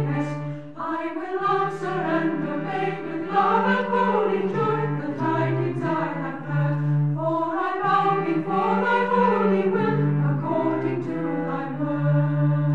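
A choir singing a slow sacred piece in long held chords, the upper voices rising and falling over sustained low notes.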